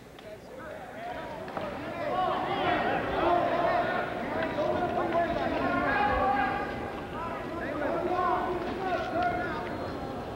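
Gymnasium crowd shouting and calling out, many voices overlapping, swelling after the first couple of seconds.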